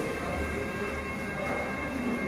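Steady background hum with a few faint, steady high whining tones, typical of workshop room tone; no distinct tool or trim-clip sound stands out.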